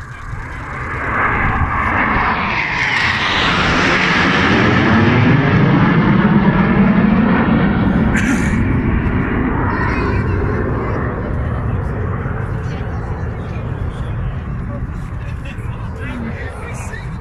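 Three Panavia Tornado jets flying past in formation. The jet noise swells over a few seconds, is loudest mid-way, then fades slowly, dropping in pitch as they move away.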